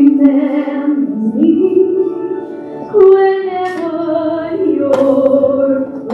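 A woman singing a slow hymn in long held notes with vibrato, over sustained instrumental chords.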